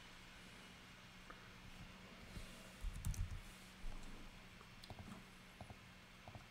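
Faint computer mouse clicks and a few light keyboard taps at a desk. A cluster of soft low thumps comes about halfway through, over a steady low hum.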